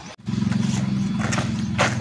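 A steady low hum, like an engine running at idle, starts suddenly about a quarter of a second in, with a few short, sharp sounds over it near the end.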